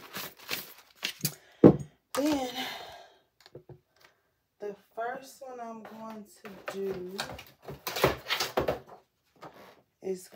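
Mostly a woman's quiet, indistinct speech, with a single sharp thunk just under two seconds in as something is set down on the tabletop, and a few lighter knocks around it.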